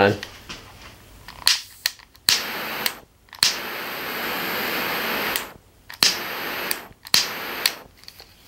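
SOTO Pocket Torch, freshly fuelled with a new disposable lighter, being fired: sharp ignition clicks, then the jet flame hissing steadily for about two seconds. Near the end come two more clicks, each followed by a short hiss as it is lit again.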